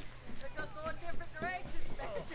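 Small children's high-pitched voices: a few short calls and bits of chatter, with one rising squeal-like call about one and a half seconds in.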